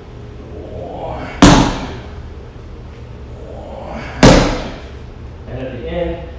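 Two hard punches with the body's weight behind them landing on a handheld impact pad, about three seconds apart, each a sharp smack followed by a short echo.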